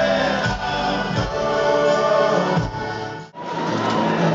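Live band music with a brass horn section playing held chords. About three seconds in the sound breaks off abruptly, and a different live music recording begins.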